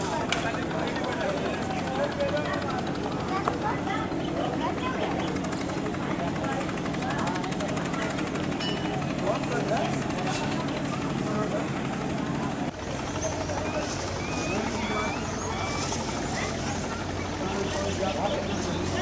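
Many voices talking over one another, with a steady low engine drone from a boat beneath them. About two-thirds of the way through the sound changes abruptly: the drone drops lower, and short high chirps join the chatter.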